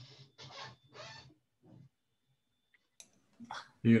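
Quiet, low mumbled speech from a man over a video-call connection, then a short pause with a couple of faint clicks, and a louder voice starting near the end.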